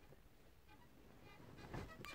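Near silence, with a faint brief sound near the end.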